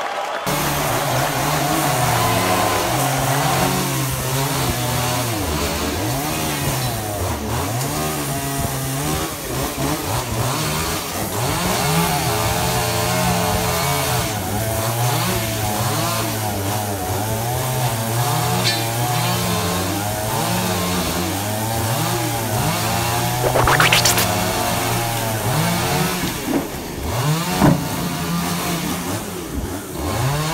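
Chainsaw running and cutting through a fallen tree, its engine revving up and down continually as it bites into the wood. There is a brief sharp crack about two-thirds of the way through.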